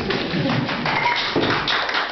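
Audience applauding: many people clapping at once, with a dense, irregular run of claps.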